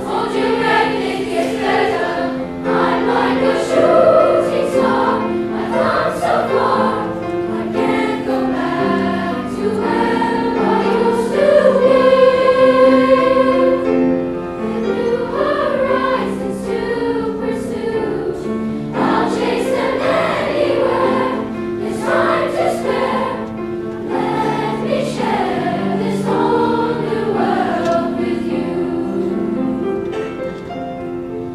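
Sixth-grade children's choir singing a song in unison and parts, with a long held note about halfway through that is the loudest point.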